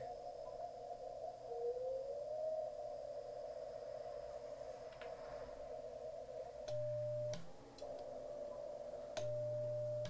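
Icom IC-7300 receiver audio through its narrow CW filter: a steady hiss of 40-meter band noise, with a tone gliding up as the radio tunes across a signal about two seconds in. Twice, around seven and nine seconds in, the transmitter is keyed for an SWR reading. Each time a steady CW sidetone sounds over a low hum, with a click as it starts and stops.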